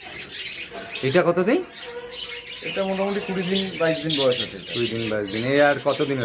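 Budgerigar chick, held in the hand, calling in short raspy squawks, with a man's voice underneath.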